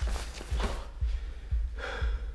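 Heavy, gasping breaths of someone winded after a fight, over a low pulse of music beating about twice a second.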